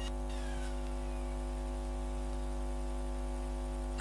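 Steady electrical mains hum and buzz from a microphone and sound system, one unchanging pitch with many overtones. A few faint short falling high tones are heard in the first second.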